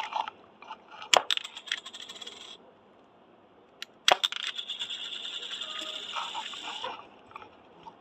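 Shoot Blasters disc-shooter toy firing twice with a sharp snap, about a second in and again about four seconds in. Each time the small plastic disc lands and rattles on a hard surface as it comes to rest, the second time for about three seconds.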